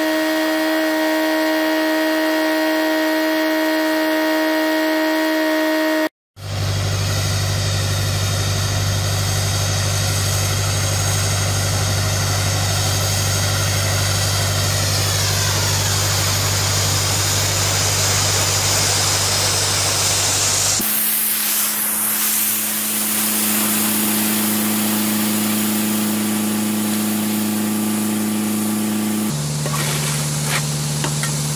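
Pressure washer running steadily with the hiss of a rotary surface cleaner spraying water across an artificial-grass tennis court. There is a steady mechanical hum under the spray. The sound drops out for a moment about six seconds in, and its hum changes pitch twice later on.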